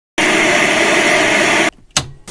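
Television static hiss: a loud, even burst of white noise lasting about a second and a half that cuts off abruptly, followed by a brief click.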